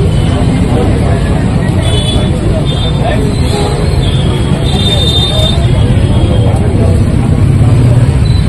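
Indistinct talk among a group of people over a steady low rumble of road traffic, with a few short high-pitched tones in the middle.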